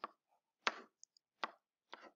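A pen stylus tapping against a writing tablet or screen while handwriting: three short, sharp taps about two-thirds of a second apart.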